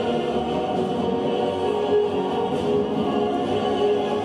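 Choral music: a choir singing long held chords over music, steady throughout.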